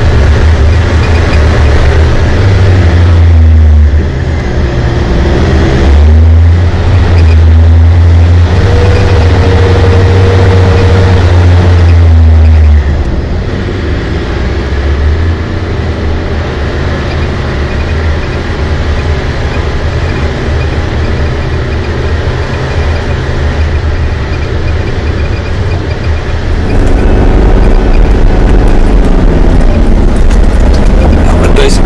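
Nissan Patrol 4WD's engine pulling up a steep dirt climb, its revs dipping and recovering several times. It drops quieter about a third of the way through and gets louder again near the end.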